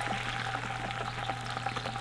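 Soy sauce poured into hot oil with ginger and green onions in a stainless steel skillet, sizzling and crackling steadily with many small pops.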